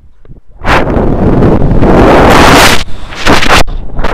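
Wind rushing over an action camera's microphone as a rope jumper swings at speed through the arc of a rope jump. It is very loud for about two seconds, then comes again as a shorter gust near the end.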